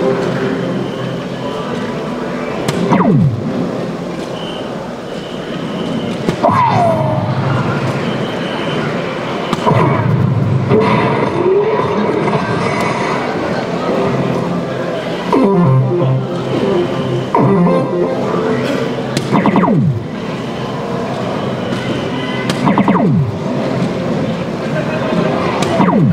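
Electronic soft-tip dartboard machine playing its background music, with a falling swoop sound effect every few seconds as darts land and scores register. Hall chatter runs underneath.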